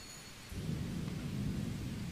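A low rumble that starts suddenly about half a second in, swells, then slowly fades.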